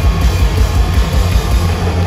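Live rock band playing loud, with electric guitars and a drum kit over a heavy low end, recorded from within the concert crowd.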